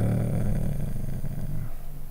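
A man's low, drawn-out hesitation "euh", held at one steady pitch for nearly two seconds and then stopping.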